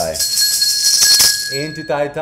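A small bell rings with steady high tones, over a loud shaking jingle that dies away about a second and a half in.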